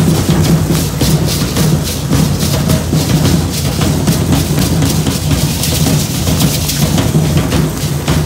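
Matachines dance drums beating a loud, fast, unbroken rhythm, with quick sharp strokes repeating throughout.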